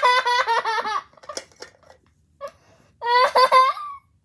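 A child laughing in two high-pitched bouts of quick repeated 'ha' pulses, one at the start and another about three seconds in.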